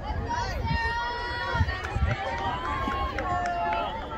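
Several spectators shouting and cheering from the infield, with long drawn-out calls overlapping one another, over a low rumble.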